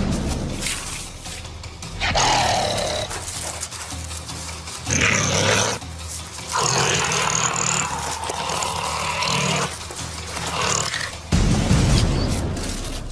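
Harsh, growl-like animal sounds in several bursts, the longest about three seconds, over a low music bed.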